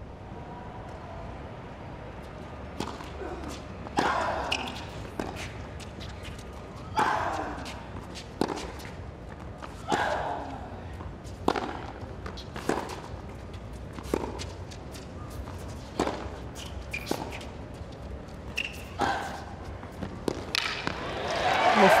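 Tennis rally: racket strikes on the ball about every second and a half, some shots with a player's grunt. Near the end the crowd breaks into cheering and applause as the point is won.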